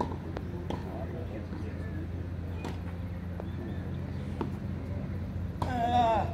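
Tennis racket striking the ball on a serve, a sharp crack right at the start, followed by a few fainter knocks of the ball over a steady low hum. A man's voice comes in near the end.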